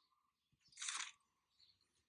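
A single short page-turn swish from an on-screen flipbook, about a second in, with near silence around it.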